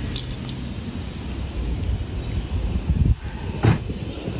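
A low, steady outdoor rumble, with one short clink about three and a half seconds in.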